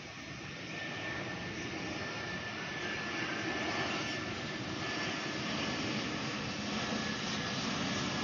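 Citilink Airbus A320-family twin-jet airliner passing low overhead. Its jet engines make a steady rushing noise that grows slowly louder, with a thin high engine whine running through it.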